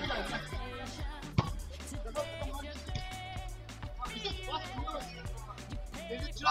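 Music with a steady bass line, with men's voices over it, and a single sharp knock about one and a half seconds in.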